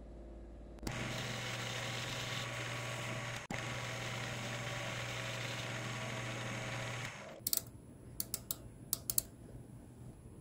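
Shoptask lathe-mill combo running a light cutting pass on the steam-engine crosshead's outside diameter: a steady mechanical whirr with a low hum starts about a second in, breaks off for an instant midway and stops a few seconds before the end. Several sharp clicks follow.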